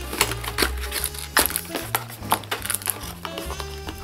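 Background music with a stepping bass line, over light clicks and rustles of a cardboard camera box being opened by hand.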